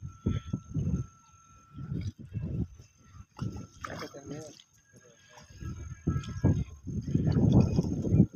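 People's voices talking, louder near the end, with a faint steady high-pitched tone behind them.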